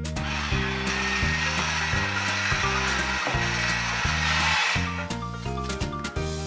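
Toy cash register's small motor whirring steadily for about four and a half seconds after a button press, stopping near the end, over background children's music.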